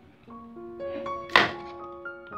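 Background music of held, melodic keyboard-like notes. About one and a half seconds in comes a single sharp thunk: a pestle striking garlic cloves in a mortar.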